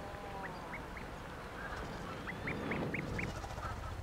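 An Atlantic puffin chick peeping in its burrow: a series of short, thin, rising peeps, a few faint ones at first, then a quicker run of five louder peeps in the second half.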